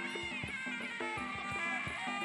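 Traditional muay thai ringside music (sarama): a reedy, nasal pi java oboe melody over a steady drum beat of about three strokes a second.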